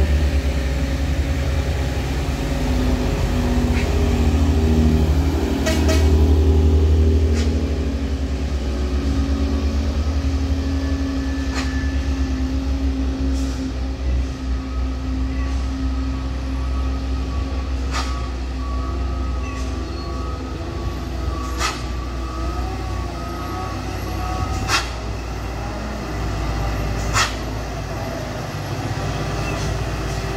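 Diesel engine of a heavily loaded Mitsubishi Colt Diesel HDL truck pulling strongly up a steep grade, a steady deep drone that swells briefly a few seconds in. Several sharp clicks are heard over it.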